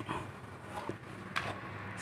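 Faint rubbing and handling noise of a cloth rag wiping inside a scooter's air-filter housing, with a few light knocks.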